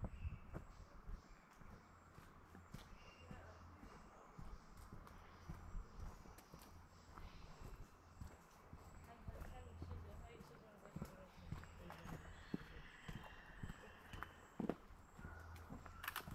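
Faint footsteps of a hiker walking on a dirt path strewn with leaf litter, a run of irregular soft crunches and thumps.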